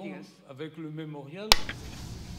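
A woman's voice trailing off, then a single sharp microphone click about one and a half seconds in, after which a live microphone's hiss and rumble come up.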